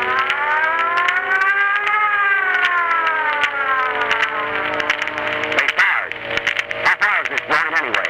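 A siren sound effect in an old radio broadcast: one wail that rises for about two seconds and then slowly falls, with voices coming in near the end.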